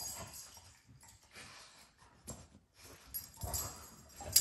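A dog rolling and wriggling on a blanket on a dog bed: fabric rustling and scuffling in irregular bursts, loudest near the end.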